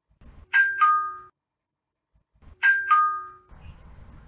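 Bus stop-announcement system's two-tone chime, a falling ding-dong, sounding twice about two seconds apart.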